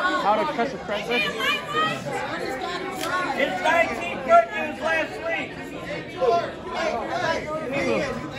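Indistinct chatter of several people talking at once in a large hall.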